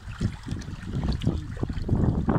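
Wind buffeting the microphone, an uneven low rumble with faint small handling clicks.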